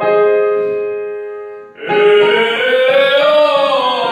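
A note struck on a digital piano fades away for nearly two seconds. Then a man's voice comes in on a held vowel that glides up and back down, as a basic vocal warm-up exercise.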